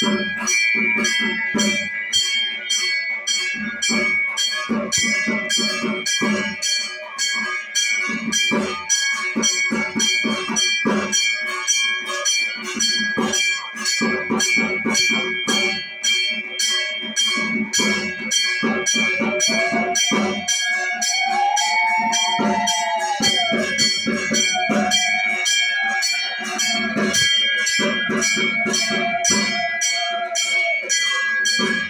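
Puja hand bell rung steadily, about three strokes a second, its ringing tones held throughout. In the second half a long rising-and-falling tone sounds three times over the bell.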